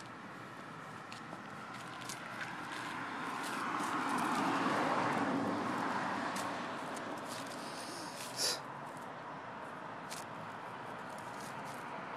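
A car passing by, growing louder to a peak about five seconds in and then fading away, over light scuffing footsteps of a toddler on pavement and grass. A short, sharper sound stands out a little past eight seconds in.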